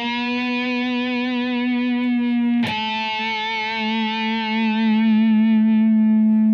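Distorted electric guitar through a Line 6 POD X3 Live processor, playing one sustained note on the fourth string at the ninth fret. The note settles up into pitch as the tremolo bar rises back from a dive. About two and a half seconds in, a fresh attack drops it to a slightly lower note, which then rings on steadily.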